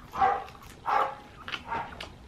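A dog barking from downstairs: about three barks, under a second apart.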